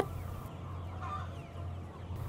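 A flock of young Lương Phượng chickens (pullets) giving faint calls, with a brief call about a second in, over a steady low hum.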